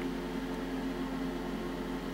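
Steady low hum with a few faint even tones over a soft hiss, with no distinct event.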